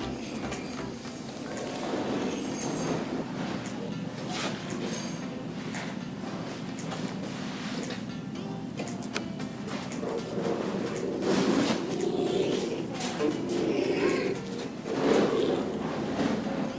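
Background music with a steady low tone, over intermittent crackling as masking tape is peeled from the edge of a freshly sprayed Line-X bed liner.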